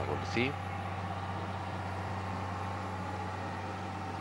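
A steady, even hum under the race commentary, with a short bit of the commentator's voice at the very start.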